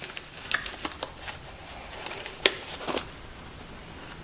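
Small cardboard parts boxes being handled by gloved hands: light rustling and soft taps, with a sharper click about two and a half seconds in.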